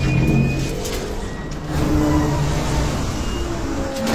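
Action-film sound mix: a loud, dense low rumble with a few drawn-out tones over it, with some music score underneath.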